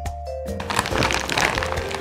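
Background music with held tones, joined about half a second in by a dense crackling of a plastic snack bag being handled.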